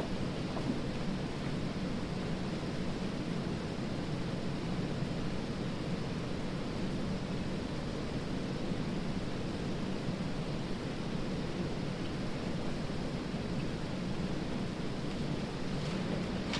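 Steady, low rumbling background noise with a faint hiss, unchanging and without any distinct sounds.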